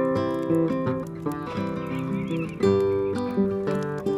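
Nylon-string classical guitar fingerpicked, a melody of plucked notes and chord tones changing every third of a second or so. About halfway through, a faint wavering high call sounds over the playing for about a second.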